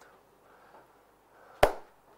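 A single sharp smack about one and a half seconds in, against faint room tone.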